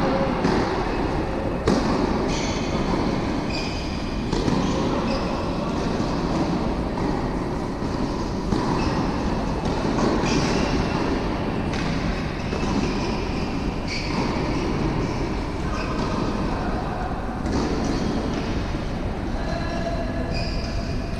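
Echoing ambience of an indoor tennis hall: a steady rumble with scattered short high squeaks and an occasional sharp knock.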